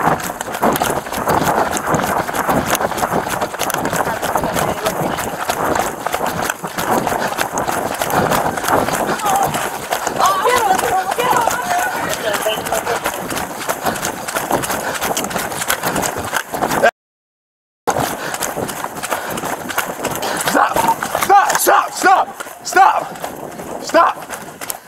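Running footsteps pounding along with the jostle of gear on a body-worn police camera during a foot chase, mixed with voice-like sounds. The sound cuts out completely for about a second, some seventeen seconds in.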